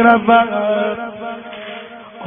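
Male reciter chanting a Persian Shia religious eulogy (madahi) in a long held, wavering sung note that trails off about halfway through, leaving only a quieter tail.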